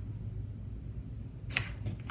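A sheet of printer paper being folded in half, with one short swish of paper about one and a half seconds in.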